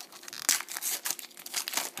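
Foil trading-card pack wrapper crinkling and tearing as it is opened and handled, a string of irregular sharp crackles with the loudest about half a second in.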